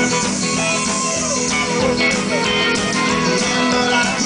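Live rockabilly band playing an instrumental break led by guitar, with bending guitar notes over upright bass and drums.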